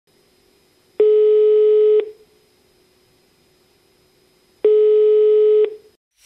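Two identical electronic beeps, each one steady tone lasting about a second, about three and a half seconds apart.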